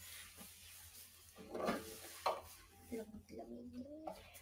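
Rustling and handling noise from someone moving about close to the microphone, with two sharp knocks a little past halfway, then a short stretch of low voice near the end.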